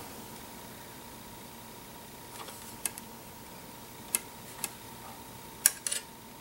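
Faint room tone with a steady high hum, broken by about six light clicks and taps from the handheld canteens and their metal cup, the loudest near the end.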